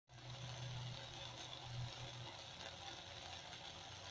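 Faint sizzling of a saucy soya manchurian stir-fry in a nonstick wok, an even hiss with a few light crackles, over a low hum that is stronger for the first two seconds or so.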